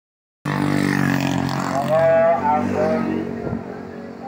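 A motor vehicle's engine running as it passes close by on the road, the sound cutting in suddenly and fading after about two seconds, with a voice heard over it in the middle.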